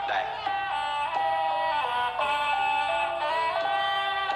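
Traditional Khmer ensemble music: a reedy lead melody in long held notes that step from pitch to pitch, with light percussion strikes beneath.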